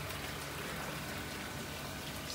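Steady trickle and splash of water running through aquarium filters and sumps, an even, continuous wash.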